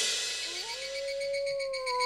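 An animal howl that rises about half a second in and then holds one long, slightly wavering note, over eerie background music with a faint, rapid, high chirping.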